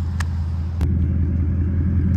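Ford Mustang 5.0 V8 idling: a steady low rumble. Two short clicks cut across it in the first second.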